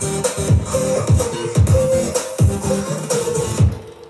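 Electronic dance music played back through an Electro-Voice Evolve 30M column PA system at a loud sound-test level. Deep bass kicks fall in pitch, about two a second, over sustained synth tones. Near the end the beat drops out into a quieter break.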